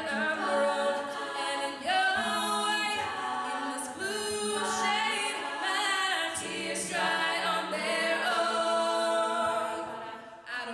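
All-female a cappella group singing in multi-part vocal harmony into microphones, voices only with no instruments.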